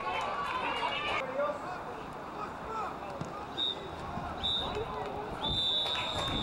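Referee's whistle blowing for full time: two short blasts, then a longer third blast near the end. Faint shouting voices carry across the pitch underneath.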